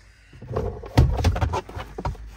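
The plastic glove box lid of a Vauxhall Corsa D knocks and rattles as it drops loose from its mounts, a known habit of this glove box. The sound starts about half a second in, and the sharpest knock comes about a second in.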